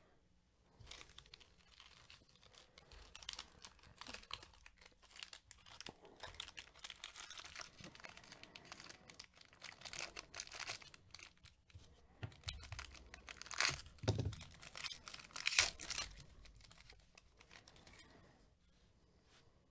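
Foil wrapper of a jumbo baseball-card pack being torn open and crinkled by hand, with a couple of louder sharp rips near the end.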